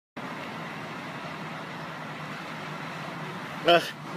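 Steady outdoor background noise: an even hiss with a low hum beneath it.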